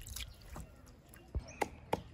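Water dripping and trickling from rinsed vegetables into a plastic bowl of water. From about a second and a half in, a few dull knocks of a wooden pestle pounding garlic in a wooden mortar.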